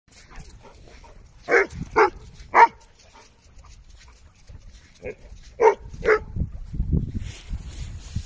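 A dog barking in two quick runs of about three barks each, the first run near the start and the second about five seconds in. A low rumbling noise rises near the end.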